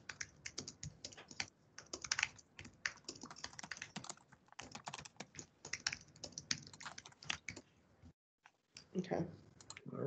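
Typing on a computer keyboard: a run of irregular keystrokes for about eight seconds that then stops.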